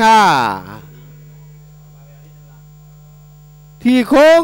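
Steady electrical mains hum under the recording, heard on its own for about three seconds after a man's voice trails off with a falling pitch near the start. The voice comes back just before the end.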